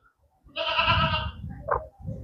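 Patira goat doe bleating once, a single wavering call of under a second about half a second in.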